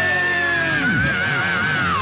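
Live power metal band with a female lead vocalist holding a long, high sung note: steady at first, then wavering with vibrato and sliding down near the end, over distorted guitars and drums as the song closes.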